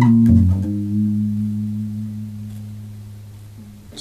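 Electric bass guitar playing a short lick in B: a few quick notes in the first second, then a low chord held and left ringing, fading away over about three seconds.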